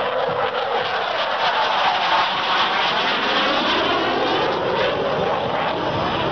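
Saab JAS 39 Gripen fighter's single Volvo RM12 turbofan flying past: a loud, rushing jet noise with sweeping tones that rise and fall through it, loudest about two seconds in.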